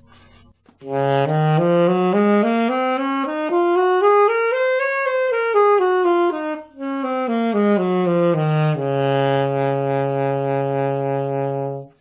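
Alto saxophone playing the B-flat major scale over two octaves, note by note up from low B-flat to the top and back down, with a brief break near the middle, ending on a low B-flat held for about three seconds.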